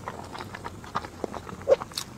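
A person chewing a mouthful of boiled egg close to the microphone, with short irregular wet clicks and smacks; one louder smack comes near the end.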